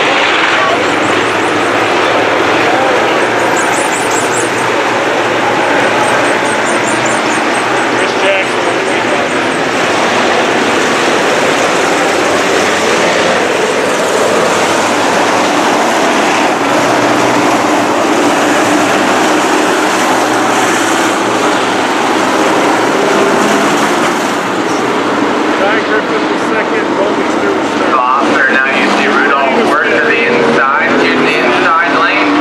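Several sport modified dirt-track race cars' V8 engines running hard around a dirt oval. The engines blend into one loud, steady sound whose pitch shifts as cars pass close by.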